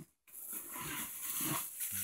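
A dog whining faintly a couple of times over light rustling, after a brief cut in the sound at the start.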